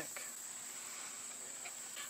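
Insects chirring steadily in the grass: one continuous high-pitched trill.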